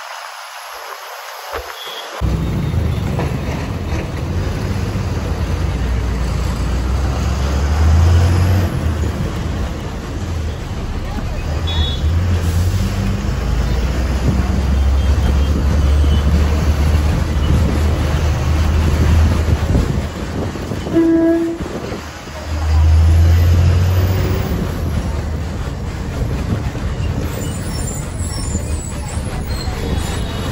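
City bus engine running under way, heard from the front of the bus with road and wind noise; its low rumble rises and falls as the bus speeds up and slows. About two-thirds of the way through there is one short horn toot.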